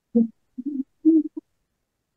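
A voice coming through a video call in three short, muffled fragments that cut in and out with dead silence between them, no words made out: the sign of a bad connection or audio dropout.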